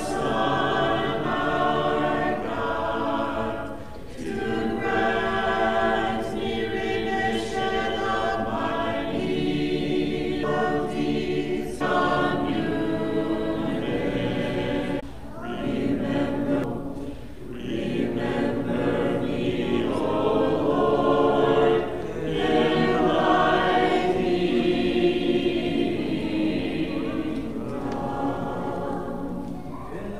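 Small church choir singing unaccompanied Orthodox liturgical chant: sustained chords sung in phrases, with short breaks between phrases.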